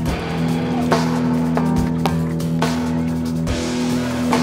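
Live funk band playing an instrumental passage: drums hit on a steady beat under long held low notes, with no singing.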